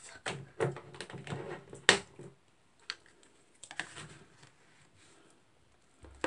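Light plastic clicks and taps of pink plastic spatulas being handled on a rolled-ice-cream maker's cold plate, with one sharp knock about two seconds in. The taps come in two clusters with a quiet stretch before the end.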